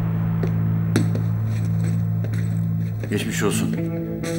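Background score music: a sustained low drone with a few sharp clicks, and a pitched melodic line coming in near the end.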